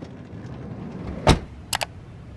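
Faint steady background noise with one sharp knock a little over a second in, then two quick clicks just after.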